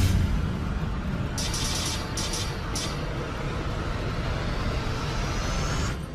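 Intro music with sound effects: a deep impact at the start, then a sustained low rumbling bass bed, a short burst of glitchy clicks about one and a half to three seconds in, and a faint rising tone building toward the end.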